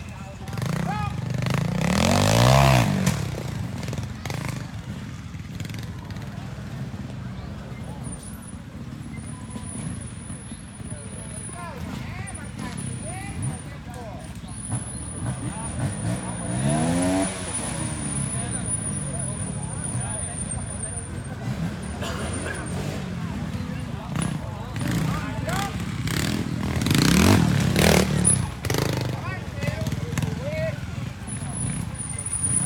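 Trials motorcycle engines idling and being blipped in short revs as riders climb log steps, the loudest revs about two seconds in, around the middle and near the end. A thin high whine runs through the middle stretch.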